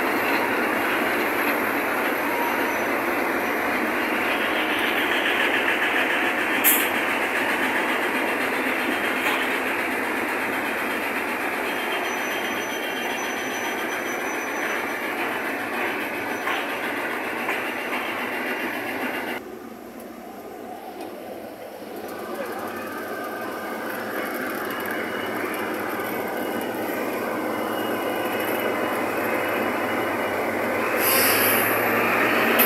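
Diesel freight locomotives (EMD MP15AC and GE C30-7) rolling slowly past at close range, engines running and wheels on the rails in one steady, loud rumble. There is a single sharp knock about seven seconds in. The sound drops away for a couple of seconds about two-thirds through, then builds again.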